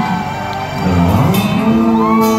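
Live rock band music from the stage: a brief lull with a low sliding note, then about a second in cymbal crashes and held guitar chords come in.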